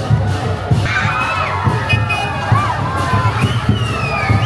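Large festival crowd shouting and cheering, with many overlapping high-pitched voices rising and falling from about a second in.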